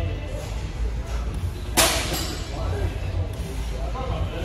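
Gym background of music and distant voices, with one sharp metallic clank of weights about halfway through.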